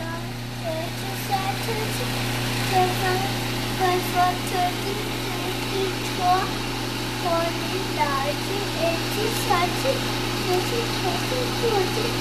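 Countertop food processor motor running steadily with an even hum, grinding peanuts into peanut butter.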